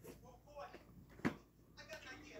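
Quiet room with a faint, brief murmured voice and a single sharp click a little past the middle.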